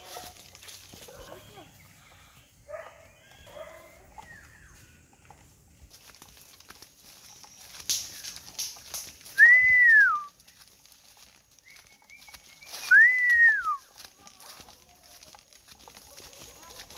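A person whistling two loud single notes about three seconds apart, each sliding up and then falling away, over the faint rustle of footsteps through undergrowth.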